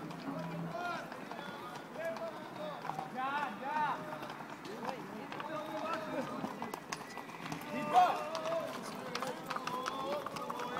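Horses' hooves clip-clopping on an asphalt road as a group of riders passes, mixed with people's voices calling out, the loudest call about eight seconds in.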